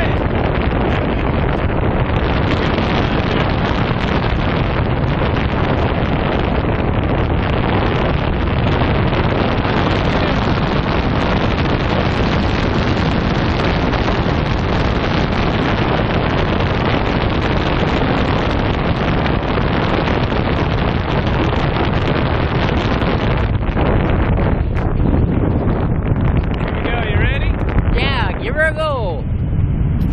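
Rushing air buffeting an action-camera microphone during a parachute descent under an open canopy, a loud, steady rush of wind noise. Near the end it eases a little and a few wavering whistle-like tones come through.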